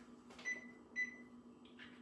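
Two electronic beeps from an oven's control panel, about half a second apart, the second a little longer, followed by a faint click. A low steady hum runs underneath.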